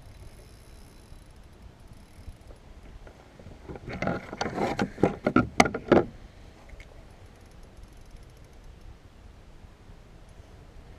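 Spinning reel being cranked while a bull redfish pulls hard on the line, with faint fast clicking. About four seconds in comes a loud two-second flurry of sharp knocks.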